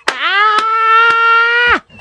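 A man's voice giving one long, high 'ooh' that swoops up at the start, is held at a steady pitch for about a second and a half, then cuts off suddenly: an exclamation in the middle of laughter.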